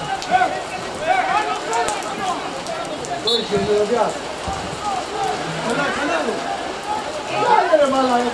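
Several voices of footballers shouting and calling to one another across the pitch, over the noise of steady rain falling.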